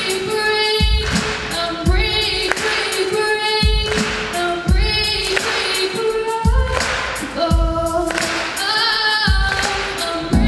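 A teenage girl singing a song live into a microphone over backing music that has a low beat about once a second.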